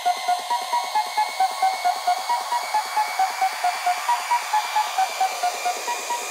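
Techno in a breakdown: a fast, evenly pulsing synth and a repeating pattern of short high notes play with no kick drum or deep bass. A rising sweep builds through the second half.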